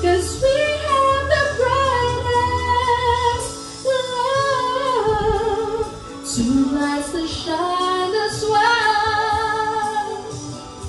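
A woman singing a slow melody into a handheld microphone, holding and sliding between notes, with a low steady backing bass under the first few seconds.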